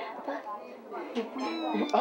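A person's voice, its pitch gliding up and down.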